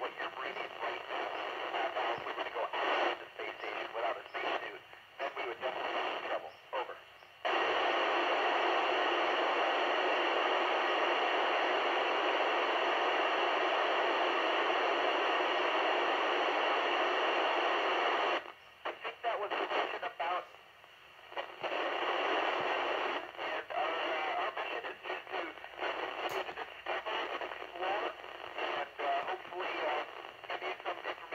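FM receiver audio on the ISS 145.800 MHz downlink: a weak signal breaking up into choppy bursts of static with brief dropouts. About seven seconds in it turns to steady, even hiss for about ten seconds, then breaks up again. This is the signal fading in and out after the astronaut has stopped talking.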